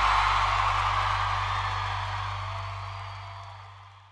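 Live rock band's last chord held over a low sustained note, with a wash of crowd noise, fading out steadily.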